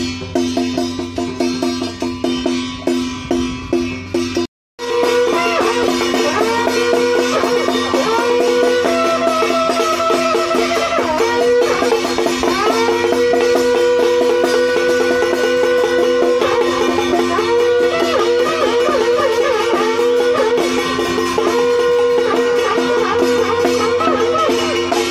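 Traditional Taiwanese temple-procession music: a melody moving over steady held notes, with drumming. The sound cuts out completely for a moment about four and a half seconds in.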